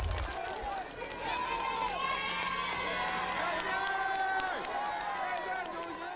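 A large crowd of adults and children cheering and calling out all at once, with scattered hand clapping.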